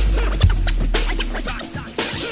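Miami bass hip hop track: a deep bass-drum hit about half a second in that rings on for over a second, with record scratching over the beat.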